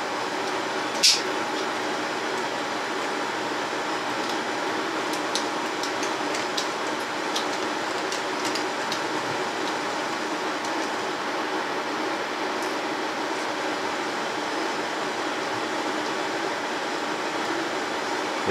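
Steady, even room noise like a ventilation fan or air-conditioning unit. A sharp click comes about a second in, and faint small clicks and taps follow as a plastic resin bottle is handled and its sealed mouth is worked at.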